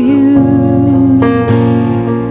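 Live worship band playing a slow song: guitar and keyboard chords under a singer holding a long note, the chord changing about a second and a half in.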